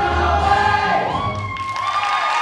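A chorus of voices with musical accompaniment holding the final chord of a show tune, which stops about halfway through; audience cheering with rising whoops begins near the end.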